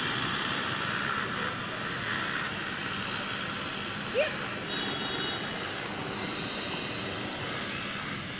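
Steady outdoor background noise with a low hum, with one short rising call about four seconds in.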